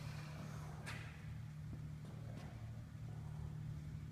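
Quiet room tone: a steady low hum, with two faint clicks, about one second and about two and a half seconds in.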